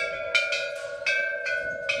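A row of hanging metal temple bells struck one after another, about five strikes in two seconds, each ringing on and overlapping the next.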